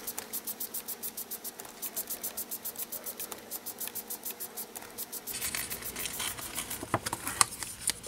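Jumbo foam sponge dauber rubbed quickly back and forth over cardstock, an even scratchy swishing of about six strokes a second. Near the end the strokes stop and give way to a rustle of paper being handled, with a few sharp clicks.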